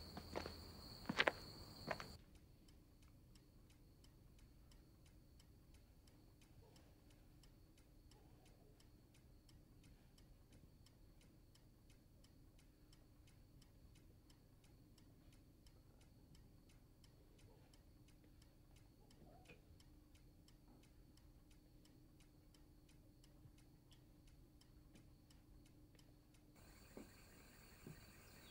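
Faint, steady, evenly spaced ticking of a clock, after two sharp knocks in the first two seconds.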